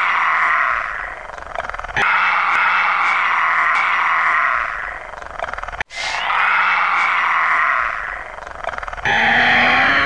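A harsh, animal-like roaring cry, repeated four times about every three seconds; each cry starts abruptly and fades away over about two seconds.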